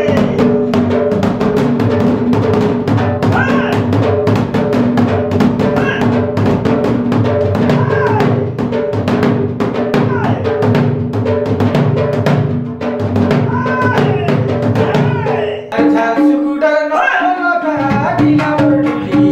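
Sambalpuri dhol, a large two-headed barrel drum, beaten fast with a stick in a dense, driving rhythm over a steady droning tone. About three seconds before the end the drumming stops and a different pitched sound takes over.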